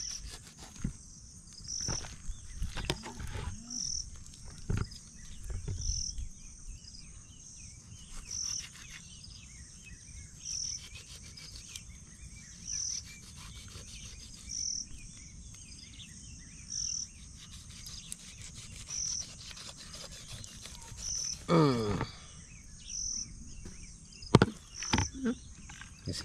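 A kitchen knife cutting and scraping through raw chicken, with faint soft taps. Over it, a short high chirp repeats steadily about every two seconds, and a brief voice sound comes near the end.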